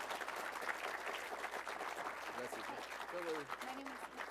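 Audience applauding, a dense patter of many hands clapping, with voices starting to talk over it in the second half.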